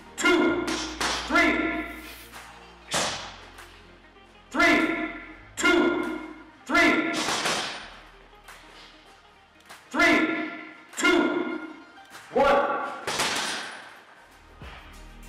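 Gloved punches landing on a hanging heavy bag in quick combinations, bursts of two to four strikes about a second apart. Each strike is a sharp thud followed by a short ringing tone that fades.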